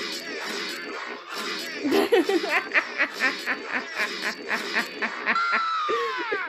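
Edited cartoon soundtrack: music with a rapid string of short, evenly repeated hits, about four a second, then a long falling whistle near the end, with a woman laughing along.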